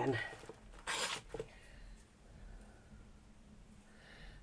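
One short scrape about a second in, with a smaller one just after, as small metal craft tools and a clay piece are handled; then only faint handling sounds.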